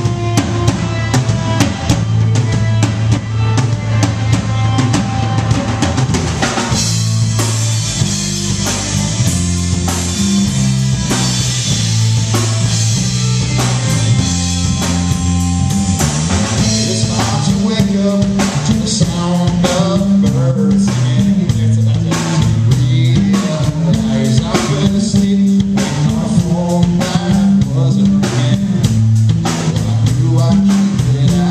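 A rock band playing live, with the drum kit out front over bass guitar and acoustic guitar. The cymbals wash heavily for several seconds in the middle.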